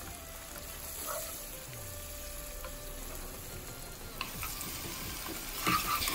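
Sliced onions sizzling steadily in hot oil in a nonstick pot, stirred and scraped with a wooden spatula.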